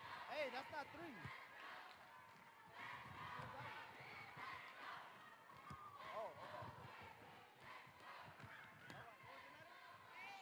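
Faint voices of a group of students talking and calling out over one another as they confer on a letter.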